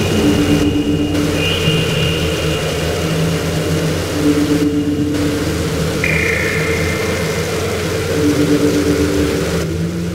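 Harsh noise music: a dense, loud wall of hiss and rumble over a low droning hum, with a mid tone returning about every four seconds and the high hiss briefly cutting out at the same intervals.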